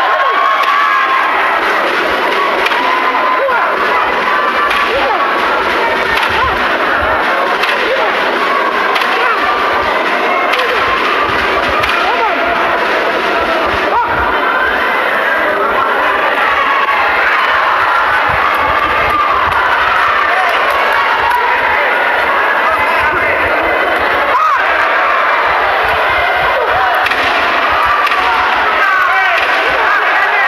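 Arena crowd of boxing spectators shouting and cheering, many voices overlapping in a dense, even din.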